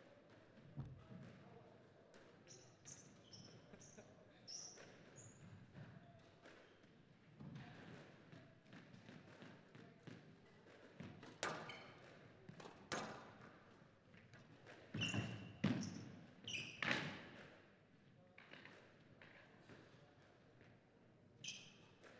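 A squash rally: the ball cracks off rackets and the court walls with sharp knocks, quieter at first and with the loudest strikes coming in quick succession in the second half.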